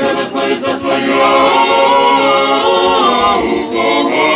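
Several voices singing an Orthodox funeral chant a cappella, in long held notes that move from one pitch to the next.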